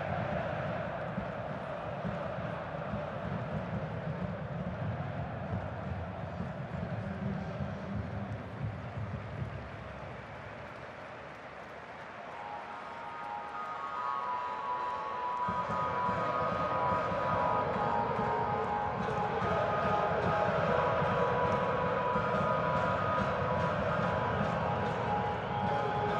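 Football stadium crowd noise, a steady din from the stands. About halfway through, a held, pitched chorus of several notes rises over it and grows louder toward the end.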